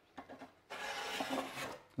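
Level5 flexible steel drywall trowel scraping across wet joint compound over drywall tape, pressed hard on its outer edge to feather the compound down to nothing. A faint brief scrape near the start, then a steadier scrape lasting about a second.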